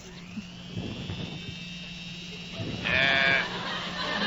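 Sound effect of an electric malted milk mixer spinning up: a whine rises over the first second and then holds steady over a low hum, with a short louder burst about three seconds in.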